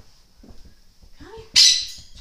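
A pet parrot gives one short, loud, harsh squawk about one and a half seconds in.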